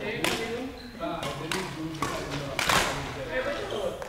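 Badminton rally: several sharp racket strikes on the shuttlecock, the loudest nearly three seconds in, echoing in a large sports hall, with players' voices between them.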